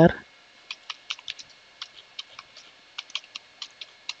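Computer keyboard being typed on: about fifteen separate key clicks at an irregular pace, starting about a second in, as a short terminal command is keyed in.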